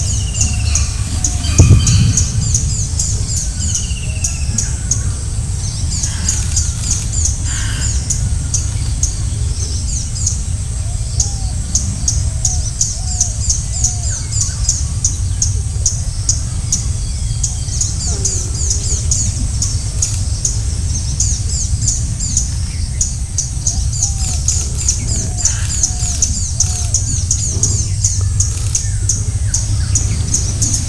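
Tropical forest ambience: birds calling over a steady high insect whine and rapid high-pitched chirping, with a continuous low rumble underneath. A short, loud low sound comes about two seconds in.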